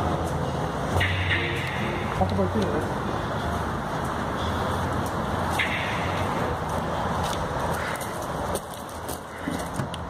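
Indistinct background voices over a steady low rumble, turning quieter near the end.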